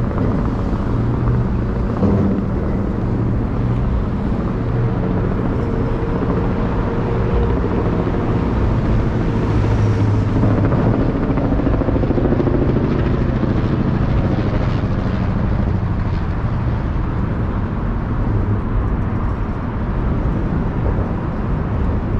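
Loud, steady rumble of traffic crossing the Manhattan Bridge, swelling a little around the middle.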